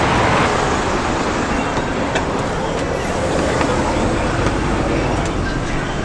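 Steady traffic noise from a busy multi-lane city road. Near the end it gives way to the low rumble of a vehicle heard from inside its cabin.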